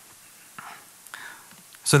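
A lull in a man's talk at a microphone, with low room noise and two soft breath-like sounds, before he starts speaking again just before the end.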